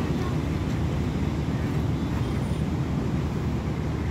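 Steady low rumbling outdoor background noise with no distinct events.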